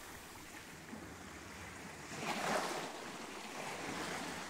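Faint surf on a shore: a wave washes in and draws back about two seconds in, over a low steady rush.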